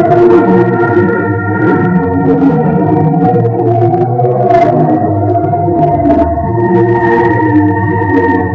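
Loud droning music of sustained organ chords that shift slowly, with scattered clicks over it.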